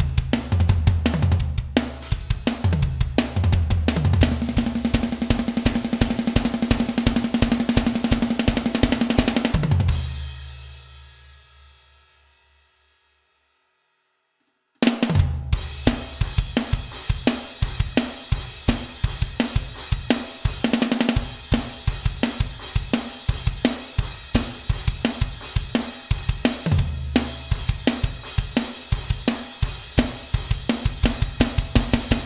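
Pop-punk drum part played on an electronic drum kit along with the song's band track: a driving rock beat with bass drum, snare and cymbals. About ten seconds in everything fades to silence for a couple of seconds, then drums and band come back in abruptly.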